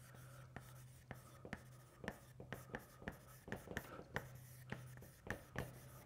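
Chalk writing on a blackboard: a string of faint, irregular taps and short scratches as letters are written. A low steady hum sits underneath.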